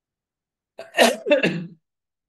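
A man sneezing once, a sharp burst about a second in.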